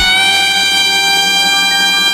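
Soprano saxophone holding one long, steady note over a backing track.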